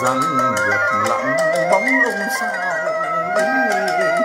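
A man singing chèo, the Vietnamese folk-opera style, with sliding, ornamented phrasing. Under the voice runs an accompaniment of traditional instruments carrying a continuous melody.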